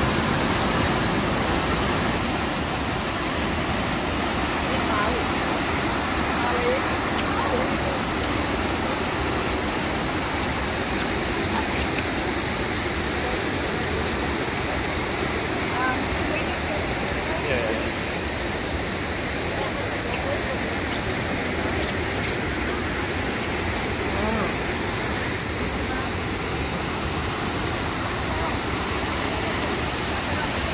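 River rapids rushing steadily over and between large boulders, a continuous roar of white water.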